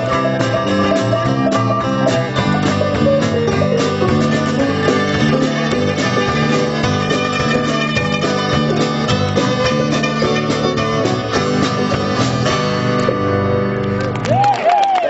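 Live country gospel band playing an instrumental passage: strummed acoustic guitar under a plucked-string lead, steady throughout.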